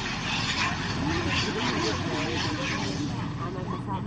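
A pause in the talk, filled with a steady background rush of noise and a faint, distant voice.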